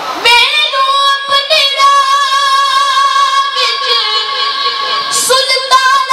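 A boy's voice singing a Punjabi naat, a devotional song, with no instruments. He holds two long, slightly wavering notes, takes a brief breath about five seconds in, and starts the next phrase.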